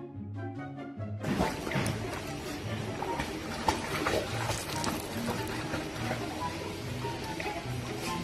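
Background music throughout. About a second in, the sound changes abruptly to water splashing and sloshing as a golden retriever swims through a pool, with the music carrying on underneath.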